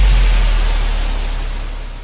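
Outro of an electronic dance remix: a long held sub-bass note under a wash of white-noise hiss, both fading out steadily.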